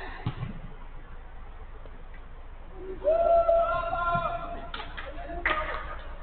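A player's long shout on the pitch, held on one note for about a second and a half a little after halfway, with shorter shouts after it and a short low thump near the start. Picked up by a security camera's microphone, so it sounds thin and dull.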